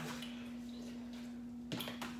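Quiet room tone with a steady low hum and one short click near the end.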